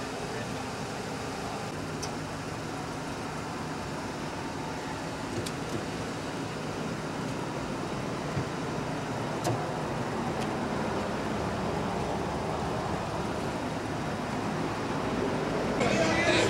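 Steady car engine and road traffic noise on a city street, with a few faint sharp clicks.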